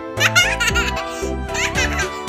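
Children's background music with a baby's giggling laid over it in two short bursts, one near the start and one near the end.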